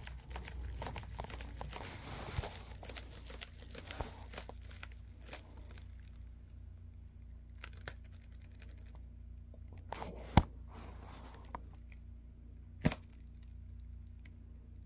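Sheet of aluminum foil crinkling as it is shaken by hand, rustling for the first several seconds and then dying away. Two sharp clicks come later.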